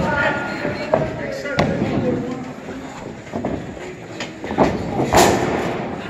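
Voices shouting in a large hall, broken by several sharp impacts in the wrestling ring. The loudest comes a little after five seconds in.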